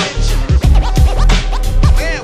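Hip hop beat with turntable scratching: a record scratched back and forth in short rising-and-falling strokes over the drums, thickest in the second half.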